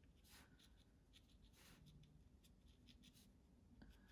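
Near silence, with a few faint strokes of a small round Princeton Snap watercolour brush blending paint on cold-pressed watercolour paper.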